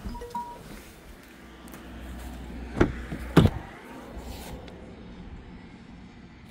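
Mercedes A250e's doors being handled as someone gets out and opens the rear door: two sharp clunks about half a second apart, roughly three seconds in, with a short faint beep near the start.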